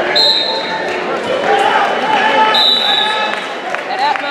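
Two whistle blasts, a short one just after the start and a longer one about two and a half seconds in, over spectators shouting in a gym with the wrestling mat thudding.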